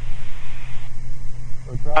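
Steady drone of a Beechcraft Baron's twin piston engines and propellers heard inside the cockpit, a low even hum with some hiss. A man's voice comes in near the end.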